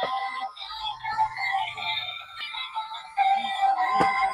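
Electronic song playing from a battery-powered light-up toy scooter's small built-in speaker. It sounds thin, with almost no bass.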